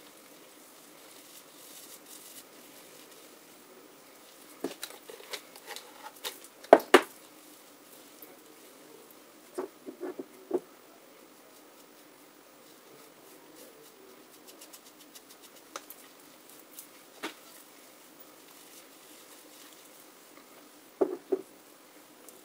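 Handling noise from hair dye being worked onto wet hair with gloved hands and a tint brush: scattered light taps and clicks. The loudest is a sharp knock about seven seconds in, with a few taps around ten seconds and a pair near the end.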